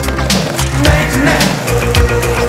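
Rock music with a steady drum beat over a skateboard rolling down a wooden ramp and across concrete.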